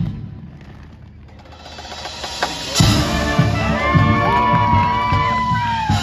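High school marching band playing its field show: the full band cuts off at the start, leaving a lull of about two seconds. It comes back in with a hit a little under three seconds in, then a held melody line that bends in pitch and slides downward near the end.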